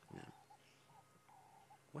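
Near silence: faint outdoor background with a low steady hum and a few faint short sounds.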